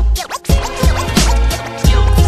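Hip hop beat with heavy bass kicks and turntable scratching. The beat drops out briefly near the start, where scratched sweeps slide up and down in pitch.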